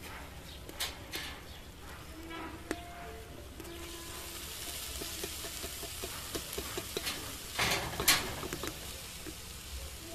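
Food frying in a hot iron karahi as shredded vegetable is tipped in from a plastic colander. The sizzling hiss thickens about four seconds in, with a couple of louder bursts of sound just before eight seconds.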